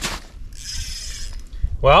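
Spinning fishing reel being cranked, a short mechanical whirring lasting about a second. Low wind rumble on the microphone runs under it.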